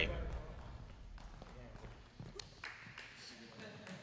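Faint gym background after a voice trails off: distant indistinct voices and a couple of soft taps.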